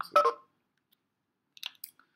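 A pause after speech: near silence, with a few faint, short clicks near the end.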